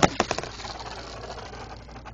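LEGO spinning tops landing in a plastic stadium with a few sharp clacks, then spinning and scraping against the plastic bowl and each other in a fast, dense rattle.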